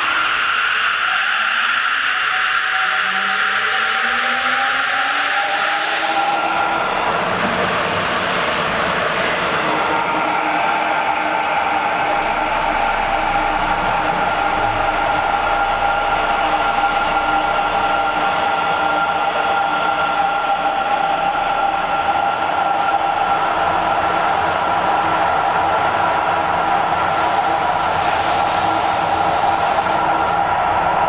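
Sapporo Tozai Line rubber-tyred subway train pulling out of the platform. Its electric motors whine, the pitch climbing over the first several seconds as it accelerates, then settling into a steady running sound as the cars pass.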